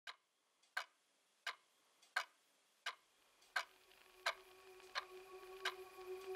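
Quiet clock ticking, evenly spaced at about one tick every 0.7 seconds, opening a drum and bass track. From about halfway a steady held tone fades in underneath and grows louder.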